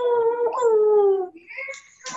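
A dog howling in long, slowly falling notes: one howl ends about half a second in and a second follows straight after, fading out before the end.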